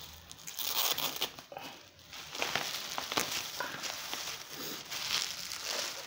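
Plastic bubble wrap crinkling and crackling as it is handled and pulled open, starting about half a second in and going on in uneven bursts.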